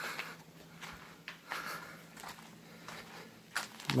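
Faint, irregular scuffs and clicks of footsteps and camera handling while walking over rocky ground.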